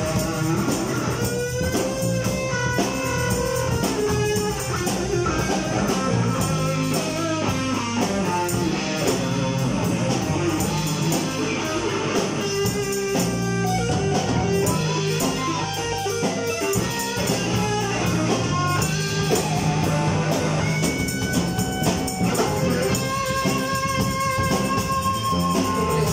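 A live instrumental band jam: electric guitar and bass over a drum kit, playing continuously with a shifting melodic line above steady low notes.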